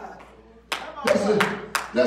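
Four sharp claps about a third of a second apart, beginning just under a second in, over a voice.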